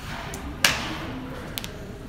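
A single sharp hand clap about two thirds of a second in, with a short echo, followed by a few faint ticks.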